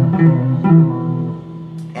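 Ibanez electric guitar playing a short run of tapped arpeggio notes; the last note rings on and fades away.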